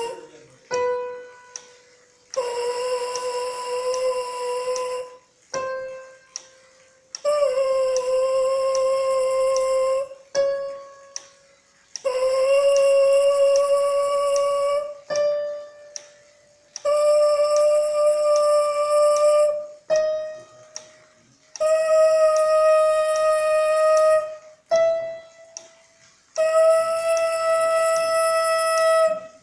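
A trombone mouthpiece is buzzed on its own in a warm-up exercise: six held notes of about three seconds each, every one a step higher than the last. Each buzzed note is answered by, or matched to, a short, quieter reference tone at the same pitch sounding between the notes.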